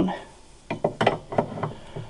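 Steel wrenches clicking and knocking against each other and against the A/C line fitting on an accumulator as the fitting is tightened. There are half a dozen short, light clicks in quick succession, starting a little under a second in.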